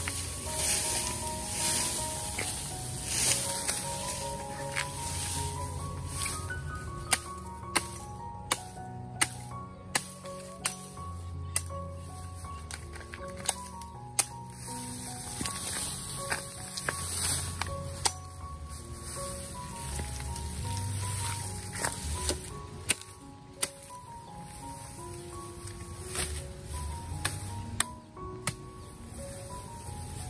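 Background music with a simple melody throughout, over a large knife chopping green bamboo stems: a string of sharp chops in the middle and a few more later.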